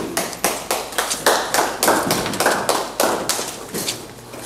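A small audience clapping, a few people's uneven claps, thinning out near the end.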